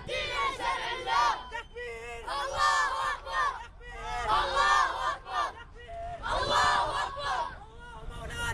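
Protest crowd chanting slogans in unison, led by boys' high voices, shouted in four short phrases with brief pauses between them.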